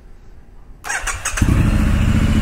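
2019 Triumph Street Scrambler 900's parallel-twin engine being started: the electric starter cranks briefly just under a second in, the engine catches about half a second later and keeps running steadily and loudly.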